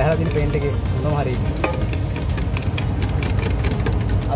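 A stirring stick scraping and clicking against the sides of a metal paint can as paint is mixed, with quick irregular ticks, busiest in the second half. Paint is mixed in the can before spraying.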